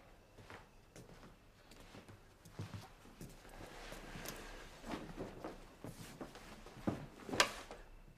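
Quiet, unhurried footsteps on a hard indoor floor with some clothing rustle, then two sharper knocks near the end, the second the loudest.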